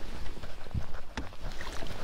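Irregular knocks and clatter of gear and a landing net on a small bass boat's carpeted deck while a hooked fish is being netted, over a steady low rumble.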